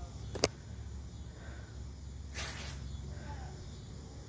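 Handling noise from a handheld phone while it is moved: a sharp click about half a second in, then a brief hissing rustle a little past halfway, over a low steady hum.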